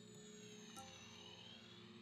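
Near silence, with a very faint ambient music bed of soft sustained tones and slow sweeping pitches.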